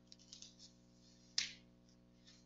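Faint scattered ticks and one sharper click about one and a half seconds in, over a low steady hum.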